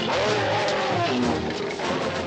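Dramatic film-score music over a loud noisy rush, with sliding, wavering tones bending up and down.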